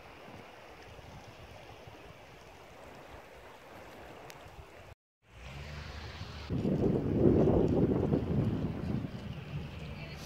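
Wind buffeting the phone's microphone out on open dunes: a steady rush that drops out for a moment about five seconds in, then gusts louder for a few seconds before easing.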